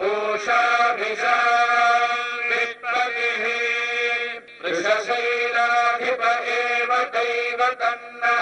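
Hindu devotional chanting in long held notes over a steady drone, with brief breaks, the longest about four and a half seconds in.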